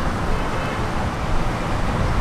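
Road traffic noise: a steady low rumble with no distinct single events.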